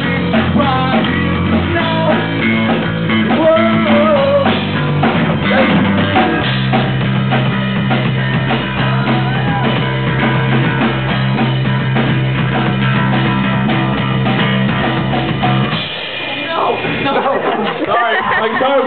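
Amateur rock band playing live, drum kit and guitar with steady low notes underneath; the music stops about sixteen seconds in and talking follows.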